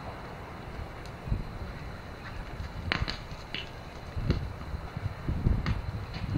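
Gusty storm wind buffeting the microphone: a steady low rumble that swells about a second and a half in, again past four seconds and near the end, with a few sharp clicks.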